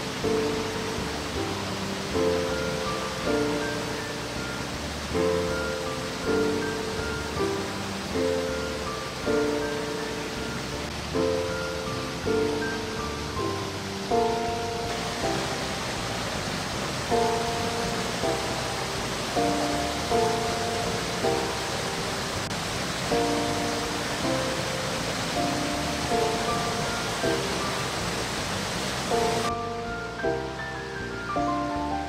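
Instrumental background music of evenly paced chords, about one a second, over a steady rush of river water tumbling down a waterfall.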